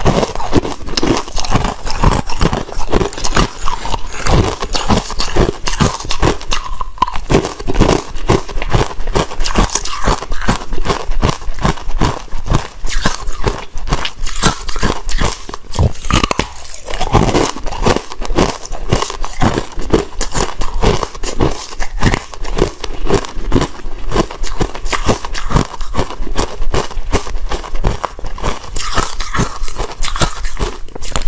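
Close-miked crunching and chewing of frozen ice bars: a dense run of sharp, cracking crunches, many a second, with only brief lulls.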